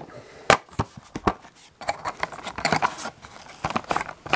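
Cardboard toy box being opened by hand: a few sharp clicks as the flaps and tabs are worked loose, then rustling and crinkling of the cardboard and plastic insert from about two seconds in.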